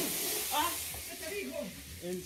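Steady hiss of scalding hot water spraying at high pressure from the plumbing under a bathroom sink, with faint voices underneath.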